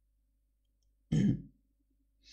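A man clears his throat once, briefly, about a second in.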